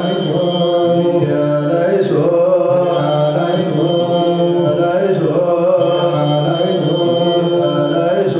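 Ethiopian Orthodox clergy chanting a slow liturgical supplication prayer, men's voices holding long, slowly moving notes together. A high ringing tone comes in for a moment about every three seconds.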